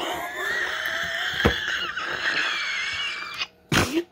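A woman's wheezing, breathless laughter: one long, high, squeaky wheeze lasting about three and a half seconds. A brief pause follows, then a sharp gasp for breath near the end.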